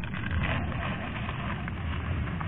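Portable camping gas stove burning steadily under a pot of boiling noodles: an even rushing hiss with a low rumble underneath and a few faint ticks.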